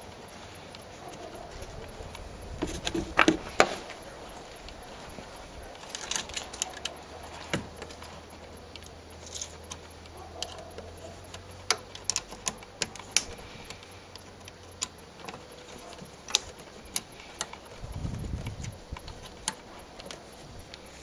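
Metal hand tool clicking and clinking against the metal housing of a car's LPG vaporizer (reducer) while its cover is worked on: a scatter of sharp irregular clicks, with a louder cluster about three seconds in.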